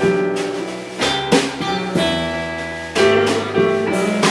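Live blues band playing an instrumental passage on electric guitar, keyboard and drum kit, with accented chords about once a second.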